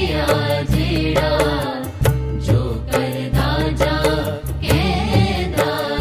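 Devotional song: a singing voice over instrumental accompaniment, with sustained bass notes and a steady percussive beat.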